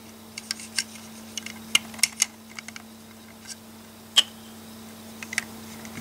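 Light, scattered clicks and taps of LEGO plastic parts being handled as a minifigure is fitted into the toy truck's cab and the hinged cab roof is moved, with one sharper click a little past the middle.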